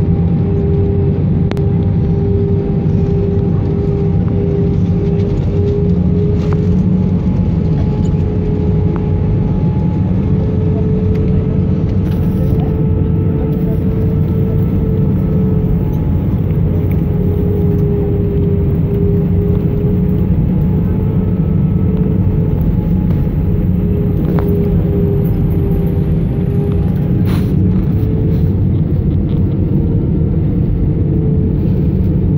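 Jet airliner cabin noise at a window seat in flight: a steady, loud rumble and rush of air with a slowly wavering engine hum.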